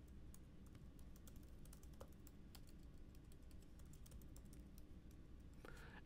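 Faint typing on a computer keyboard: a quick, irregular run of light key clicks.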